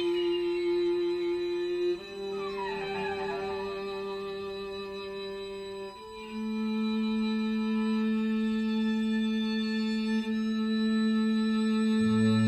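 String quartet holding long, quiet sustained chords that shift about two seconds in and again about six seconds in. Around two to three seconds in, quick falling harmonic glissandi in the upper strings give a seagull-effect cry.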